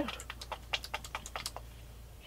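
Paintbrush dabbing and tapping against a canvas, giving a run of light, irregular ticks and clicks, several a second.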